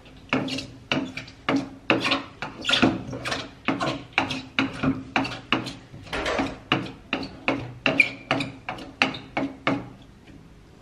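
Wooden pestle pounding beetroot slices in a wooden mortar, about two knocks a second, each with a short ring. The beetroot is being crushed to get its juice out.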